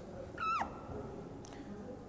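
A single short, high-pitched squeak of a duster wiping across a whiteboard, its pitch dropping at the end, followed by a faint click.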